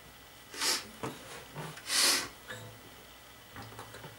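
Two short, forceful breaths through the nose, about a second and a half apart, the second the louder.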